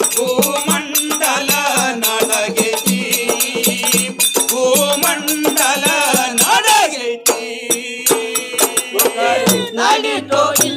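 Male voices singing a Moharam pada, a Muharram devotional folk song, over fast, steady rattling percussion and a frame drum.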